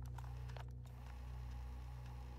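Faint, steady low drone of a dark ambient background music track, with a few faint clicks in the first second.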